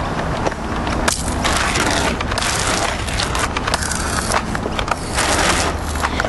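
Pump-action water pistols squirting paint, with repeated bursts of spraying and splattering against boards.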